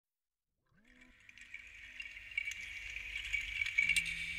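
The opening of a song fading in from silence under a second in: a steady high-pitched texture with scattered clicks over a low drone, growing louder.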